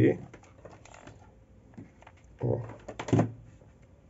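Faint light clicks and taps of fingers handling a grosgrain ribbon hair bow, in a short lull between spoken words.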